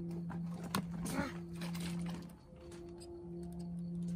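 A plastic trigger spray bottle misting into a mantis jar enclosure: a few sharp trigger clicks with short hisses of spray. Under it runs a steady low hum that drops out briefly about halfway.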